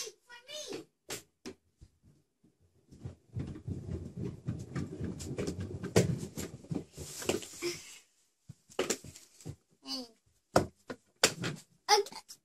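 Kick scooter's wheels rolling across the floor: a low rumble of about four and a half seconds, starting about three seconds in, with scattered knocks and clicks before and after it.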